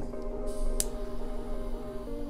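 Background music holding a steady chord. A little under a second in comes a single sharp click, the piezo ignition of a butane torch lighter.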